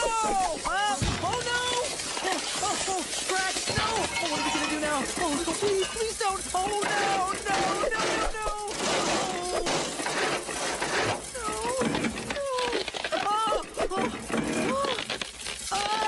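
Crash sound effects from an animated children's show soundtrack: a clattering, smashing mishap, with exclamations and music mixed in.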